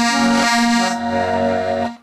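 Button accordion (squeeze box) playing a sustained chord that changes to new notes about halfway through, then cuts off suddenly just before the end.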